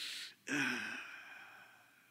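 A man's quick breath in, then an audible sigh into a close microphone: a brief voiced start that falls in pitch and fades out over about a second.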